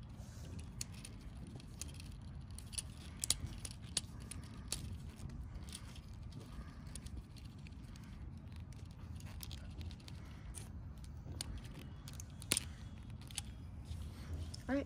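Small metallic clicks and rattles of a flathead screwdriver turning the screw of a hose clamp on a fuel pump's hose, tightening it on a new fuel pump sending unit, with light handling of the metal assembly. Scattered irregular ticks, a couple of them sharper.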